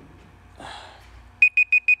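Timer alarm beeping: a group of four short, high beeps, about six a second, starting about one and a half seconds in, marking the end of a one-minute timed silence.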